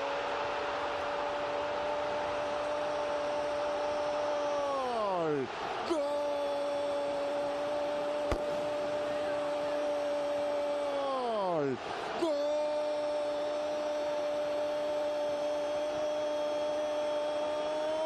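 Argentine football commentator's long, drawn-out goal cry, "¡Gooool!", held as three long unbroken notes. Each note ends in a falling pitch as his breath runs out, and he takes it up again at once.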